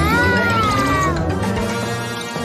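Children's cartoon background music with a high pitched cry-like sound effect that rises briefly and then slides down over about a second.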